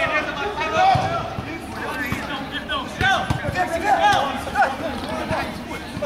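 Voices calling out across a football pitch, with a few dull thumps of a football being kicked about a second in and around three seconds in.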